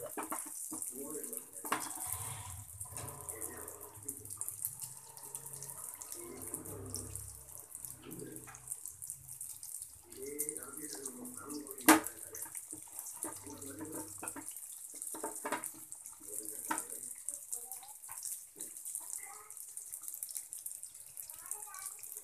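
Butter buns deep-frying in hot oil in an iron kadai: a steady sizzling hiss of bubbling oil. A single sharp click sounds about halfway through, and faint voices murmur in the background.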